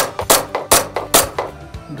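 VFC Glock 19X gas blowback airsoft pistol firing single shots in quick succession, about five sharp cracks of the slide cycling in the first second and a half, then a short pause.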